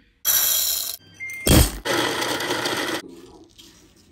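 Coffee-making noises: two bursts of clatter, the second starting with a thud, and a short electronic beep from a digital kitchen scale about a second in.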